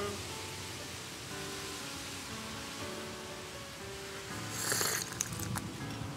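Steady hiss of rain under soft music with slow, held notes. Just before five seconds in there is a brief, louder burst of noise.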